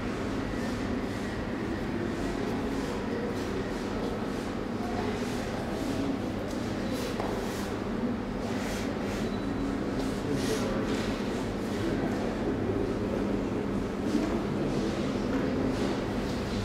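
Indoor hall ambience: a steady low hum under a faint, indistinct murmur, with a few soft rustles about halfway through.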